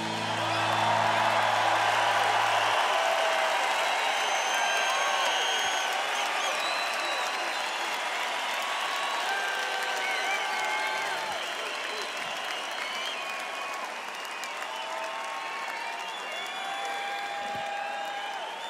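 A large concert crowd applauding and cheering, with scattered whistles and shouts, slowly dying down. A low held note ends the song and fades out in the first few seconds.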